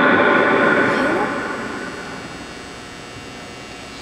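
A public-address announcer's voice echoing through a large indoor stadium and dying away over the first second or so, leaving a low, steady hum of arena room noise.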